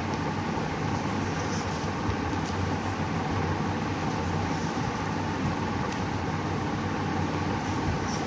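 Paper pages of a comic digest being turned by hand, giving a few soft rustles, over a steady low background rumble.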